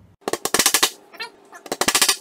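Hammer driving small nails into a plywood board: two quick runs of rapid, loud blows with a short pause between them, the rate sped up by fast-forwarded footage.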